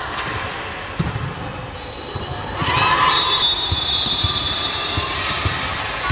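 Volleyball hits and bounces on an indoor court, a sharp hit about a second in and fainter thuds later, with the sound getting louder and busier from about halfway, in an echoing sports hall.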